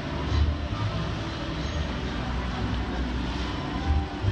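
Busy street ambience: car traffic passing close by and people talking, over a steady low rumble.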